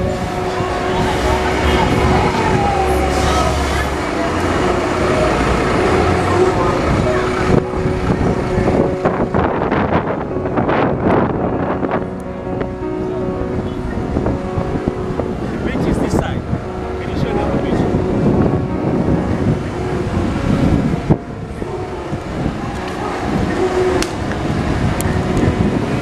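Busy city street: bus and car engines running close by, with people talking in the background.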